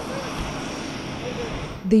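Steady jet aircraft engine noise, a continuous rushing hiss with a faint high whine, with faint voices in it; a man's narrating voice begins at the very end.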